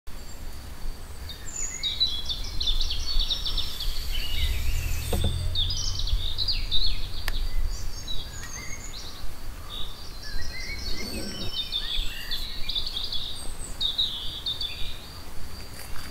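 Small birds chirping and trilling repeatedly, over a steady thin high tone and a low background rumble.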